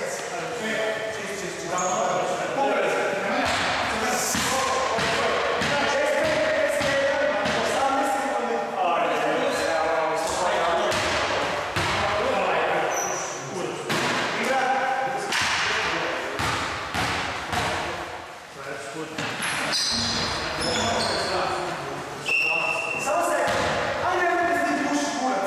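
A basketball bouncing and thudding on a wooden gym floor during play, many times over, with voices calling out across the hall.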